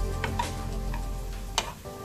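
Gulab jamun dough balls sizzling as they deep-fry in oil, with a spoon clicking against the pan as it turns them; one louder knock comes near the end. Background music plays over it.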